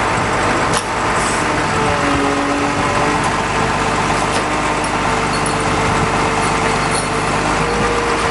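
A motor running steadily, with thin steady tones coming and going over it and a short click about a second in.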